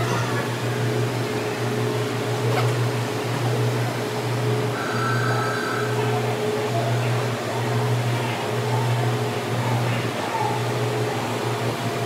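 Steady low mechanical hum of slow-moving passenger coaches, swelling and dipping about once a second, with a faint higher tone and faint voices behind it.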